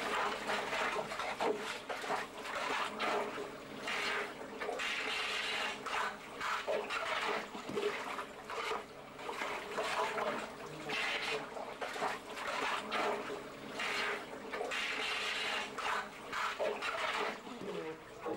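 Water trickling and splashing, unevenly, as it seeps into an underground bunker and floods it.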